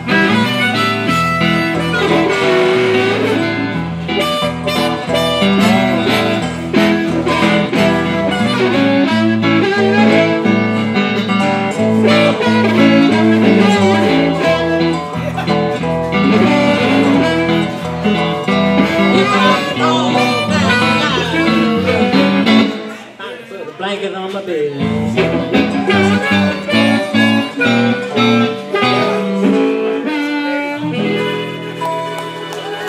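Live blues played on harmonica, electric guitar and dobro, the harmonica bending its notes over the strummed and slid strings. About three-quarters of the way through the playing drops away briefly, then picks up again.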